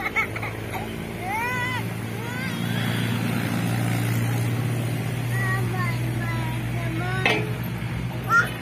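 Short high voice calls over a steady low motor hum, with one sharp knock near the end.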